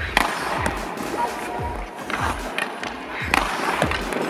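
Ice skates scraping and carving across rink ice, with a couple of sharp knocks, over background music with a steady beat.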